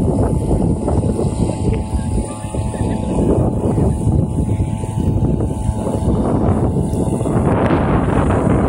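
Wind blowing across the microphone: a loud, steady low rumble.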